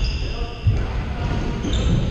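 Futsal play in a large echoing sports hall: sneakers squeak on the hardwood court in short high tones at the start and near the end. A ball thuds off a foot or the floor about two thirds of a second in, over players' distant voices.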